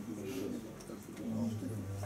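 Indistinct low voices talking quietly, with no clear words.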